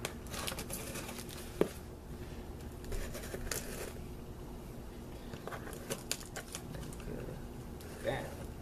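Packing tape on a cardboard box being slit and pulled with a pointed tool: scattered scrapes, crackles and clicks of tape and cardboard, with one sharp tap about a second and a half in.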